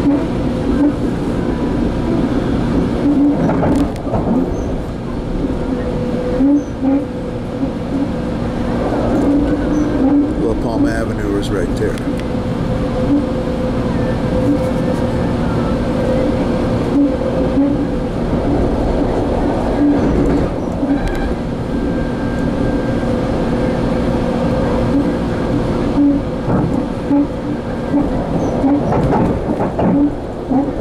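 Metrolink commuter train running along the track, heard from inside a passenger car: a steady rumble with a constant hum, broken by scattered short knocks from the wheels and rails.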